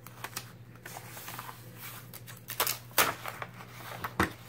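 Sheet of paper-backed sticky embroidery stabilizer rustling and crackling as a hand presses and smooths it onto a plastic embroidery hoop, with a run of short crisp crackles, the loudest about three seconds in.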